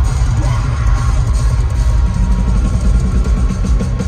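Loud live metal music from a band on stage: drum kit and distorted electric guitars, heard through a phone's microphone from the audience floor, with the drum beat growing steadier and more driving about halfway through.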